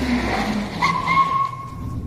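Sound effect of a car skidding to a stop: a falling engine note, then a steady high tyre squeal from just under a second in.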